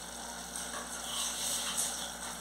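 Tomato sauce simmering in a pot on the stove, a soft, steady bubbling hiss that swells a little about halfway through.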